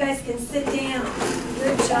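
A group of young children singing together, ending on a held note in the first moment, then a classroom hubbub of children's voices with a few light knocks and shuffles as they move about.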